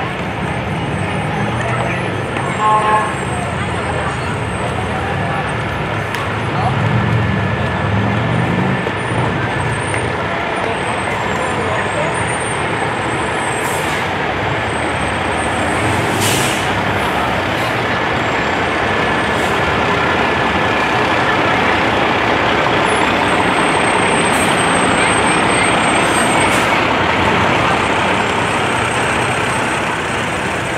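Fire engines' diesel engines running as the trucks roll slowly past, getting louder in the second half, with a short air-brake hiss about halfway through. People's voices are mixed in.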